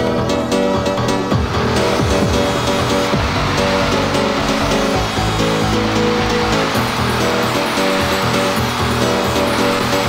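1991 breakbeat hardcore track in a breakdown. The heavy bass and beat have dropped out, leaving held synth chords under a noise wash that swells after about two seconds.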